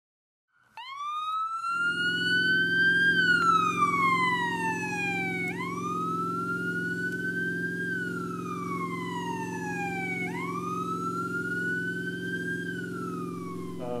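Emergency siren wailing in slow cycles, each rise and fall lasting about five seconds, three times over, above a steady low engine drone that comes in about two seconds in.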